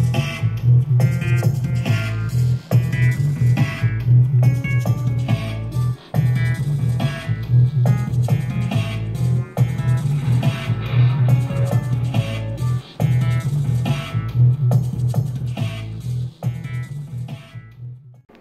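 Playback of a home-recorded dub track at 70 bpm in E Phrygian dominant: a heavy synth bassline under a drum groove, with short high synth notes on top. The whole mix drops out briefly about every three and a half seconds.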